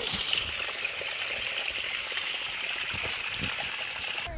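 Spring water trickling in thin streams off a rock ledge and splashing onto wet stones, a steady, even patter.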